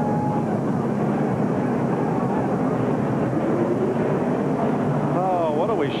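NASCAR Cup stock car's V8 engine running hard through a burnout, its rear tyres spinning and smoking, as a steady, dense noise.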